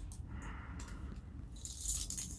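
Faint rustling of fabric with a few small clicks and rattles as the heated hoodie's battery pocket is handled, with a soft rustle near the end.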